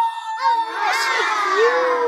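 A crowd of voices cheering and whooping together, many pitches at once sliding downward.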